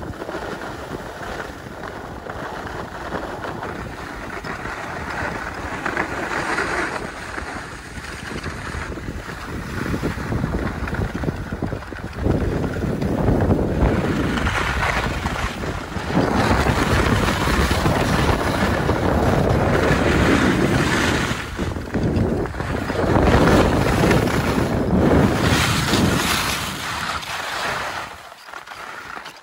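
Skis hissing and scraping over packed snow while wind rushes over the microphone during a downhill run. The noise swells and fades with the turns and grows louder from about a third of the way in as the speed picks up.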